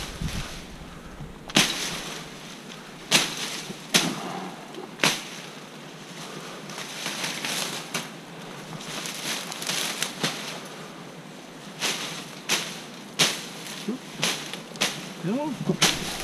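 Machete chopping through dense vines and brush: about a dozen sharp, irregular strikes, with leaves rustling between them.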